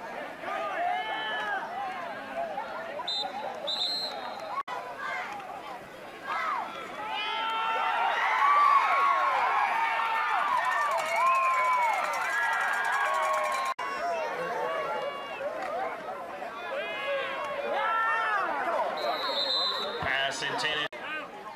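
Football crowd in the stands yelling and cheering as a play unfolds, many voices at once, swelling to its loudest about seven seconds in and easing off after a few seconds.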